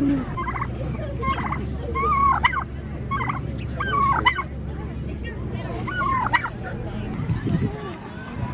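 Domestic turkey toms gobbling: about five short, warbling gobbles a second or two apart.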